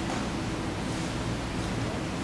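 Steady room noise: an even low hiss with a faint hum underneath, unchanging throughout.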